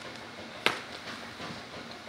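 Low steady room hiss with one sharp click about two-thirds of a second in, followed by a few faint ticks.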